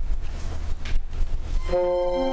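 An uneven low rumble of room noise. Near the end, a small string ensemble with violins, cello and double bass comes in with a sustained chord.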